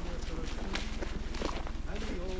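Footsteps of a line of backpackers walking on a gravel road, with indistinct voices and a steady low hum underneath.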